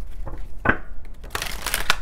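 A deck of oracle cards being shuffled by hand: a few short card slaps, then a longer rustling rush of cards about a second and a half in.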